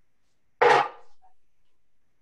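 A single short clatter of kitchenware being moved on a counter, about half a second in, dying away quickly.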